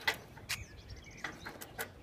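A few sharp clicks and knocks from a bicycle being brought to a stop and handled, the loudest near the start and about half a second in. Small birds chirp faintly in the background.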